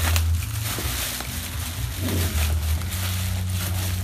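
Black plastic mailing bag crinkling and tearing as a parcel is unwrapped by hand, in a run of short crackles. A steady low hum sits underneath.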